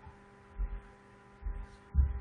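Steady electrical hum on the recording, with three soft, low thuds, the last and loudest at the very end.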